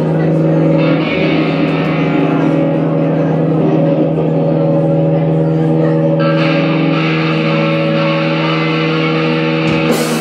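Live electric guitars holding one sustained, distorted chord through their amps, ringing steadily and turning brighter about six seconds in. It breaks off just before the end as the full rock band starts.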